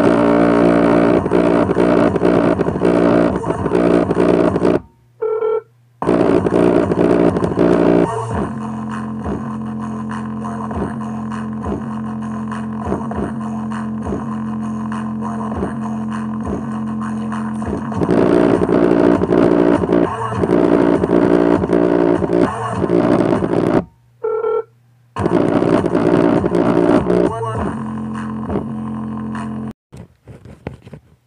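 Bass-heavy music played at full volume through a small portable Bluetooth speaker, recorded up close to its driver. The music cuts out briefly twice, about five seconds in and about twenty-four seconds in, runs quieter for a stretch in the middle, and stops suddenly at the very end.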